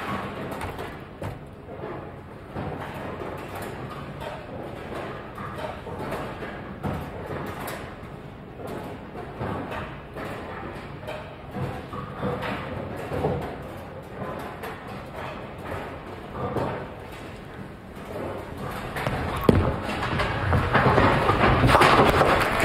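Murmur of spectators in a bowling centre. Near the end, a sharp thud, then a swell of louder noise as a ten-pin spare is converted, covering the 10 pin.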